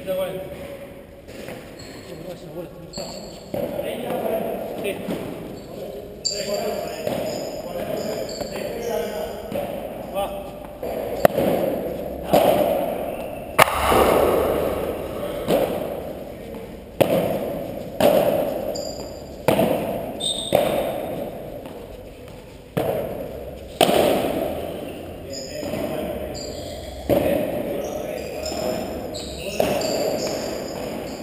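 Padel rally: the ball struck with paddle rackets and bouncing off the court, sharp pops coming about every one to one and a half seconds through the second half, each ringing on in a large echoing hall. Voices murmur in the background.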